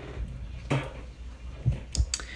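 Water being splashed onto a face at a sink to rinse off a scrub, with a few short knocks and splashes.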